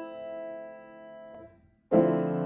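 Piano note, the ninth (E) of a D minor seventh chord, ringing and fading, then damped off about a second and a half in. Right at the end the full Dm7(add9) chord is struck.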